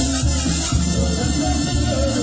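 Live banda music played through the stage sound system: brass, with a steady, pulsing bass from the sousaphone and drums underneath, and accordion in the band.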